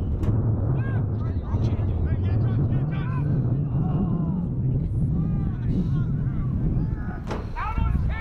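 Distant players and spectators shouting and calling across an outdoor lacrosse field over a steady low rumble, with one sharp crack about seven seconds in.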